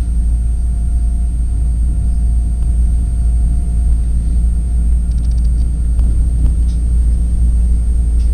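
Steady low rumble of a train running at speed over a steel truss bridge, heard from inside the carriage: wheels on rails with a faint steady hum and a quick run of faint high ticks about five seconds in.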